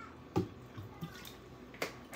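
Juice pouring from a clear plastic bottle into a glass jar with faint gurgles, and three sharp clicks or knocks as the bottle is handled, the loudest about a third of a second in.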